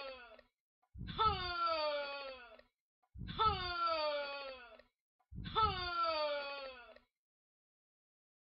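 A drawn-out wail in a young person's voice that falls slowly in pitch, repeated as identical copies about two seconds apart, three full times, as if looped in editing.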